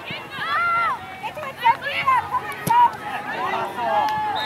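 Several voices shouting and calling out over one another, spectators and players at a soccer game, with a couple of sharp knocks about halfway through.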